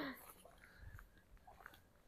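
Near silence: faint scuffs and crunches of footsteps on a concrete and debris-strewn yard, after a brief trailing voice sound right at the start.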